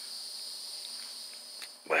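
Crickets chirping in a steady, high-pitched chorus.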